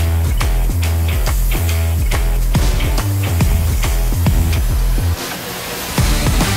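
Loud backing rock music with a heavy bass line and a steady drum beat; the bass drops out briefly near the end.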